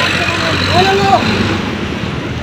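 A vehicle engine idling steadily with street traffic noise, and a brief voice about a second in.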